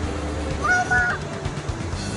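A short honk-like call of two flat, level notes, together about half a second long, heard a little under a second in, over a steady low hum.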